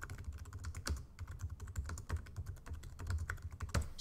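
Fast typing on a computer keyboard: an uneven run of many quick key clicks.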